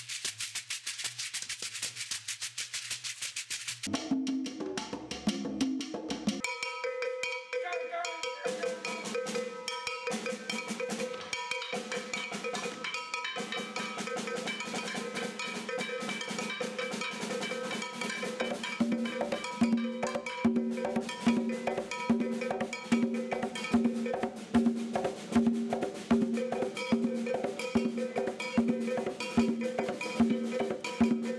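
Cuban percussion: a hand drum struck with the bare hand in a steady rhythm, playing along with other instruments that hold pitched notes. The first few seconds hold a very fast run of high strokes, the pitched notes come in about four seconds in, and deep drum tones on a regular beat join about two-thirds of the way through.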